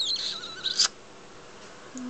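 Galah (rose-breasted cockatoo) giving a brief, high squeaky chirp of under a second, ending in a sharp click.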